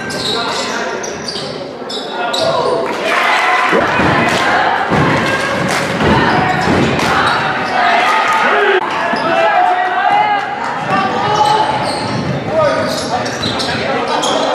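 Live game sound from a basketball gym: the ball bouncing on the hardwood court among voices from players and spectators, echoing in the hall.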